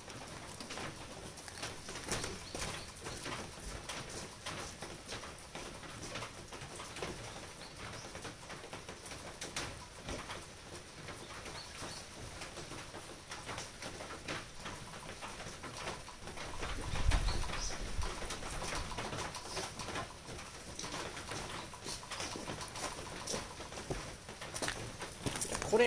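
Steady rain pattering, with scattered drips ticking close by, while a dove coos in the background. A low rumble or thump swells briefly about seventeen seconds in.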